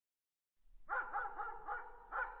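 Night-time sound-effect ambience starting about two-thirds of a second in: a steady high cricket trill with a dog barking in a quick run of faint yelps.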